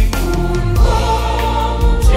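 Mixed choir of men's and women's voices singing a Catholic gospel hymn to Mary, accompanied by piano and acoustic guitar over a bass line with a steady beat.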